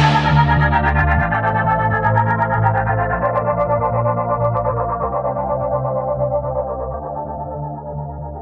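Electronic phonk music: sustained distorted synth chords over a held bass, the treble thinning out and the whole slowly getting quieter.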